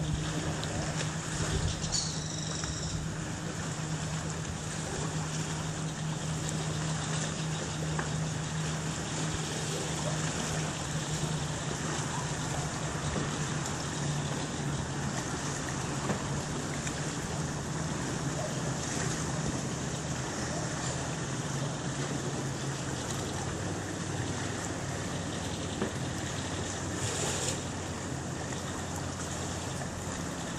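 A steady low drone of a motorboat engine out on the lake, dropping in pitch about three-quarters of the way through, under a hiss of wind on the microphone and lapping water.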